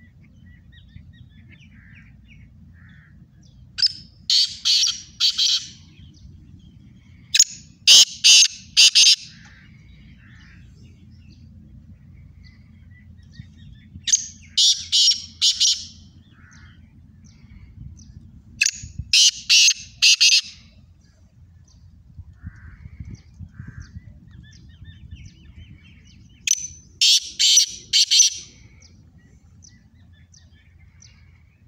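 Caged black francolins calling: five loud calls, each a run of four or five harsh grating notes lasting about two seconds, spaced several seconds apart.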